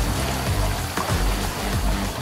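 Water jets from a LEGO dishwasher model's spray bar hissing and splashing down onto small dishes, a sound like rain, over background music.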